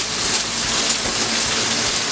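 Chicken and a freshly cracked egg frying in hot oil in a pan: a steady sizzle.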